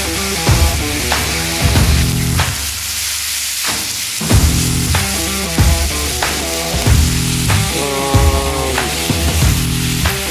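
Venison heart slices and tenderloin sizzling on a hot flat-top griddle, mixed under rock music with a steady beat.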